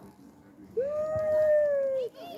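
A long, high held call, like a howl, starts about three-quarters of a second in and lasts over a second, falling slightly at the end. It is most likely a child's voice.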